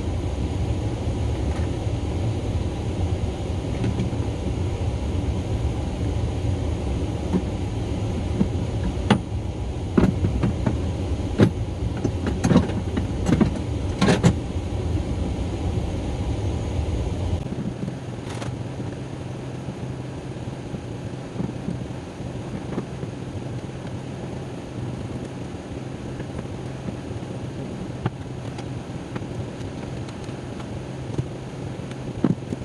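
Items being handled and set down in the back of a tuktuk: a run of sharp knocks and clicks between about 9 and 14 seconds in, over a steady low rumble that drops away about two-thirds of the way through.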